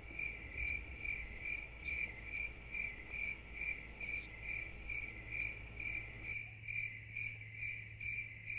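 Cricket chirping in a steady, even rhythm of about two high chirps a second, over a faint low hum. This is the stock 'crickets' sound effect laid over a silence where no answer comes.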